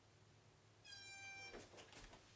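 An interval timer's electronic beep, one steady tone lasting under a second, about a second in, marking the end of a timed work interval. Then a few soft knocks and rustles as a body comes down onto a yoga mat.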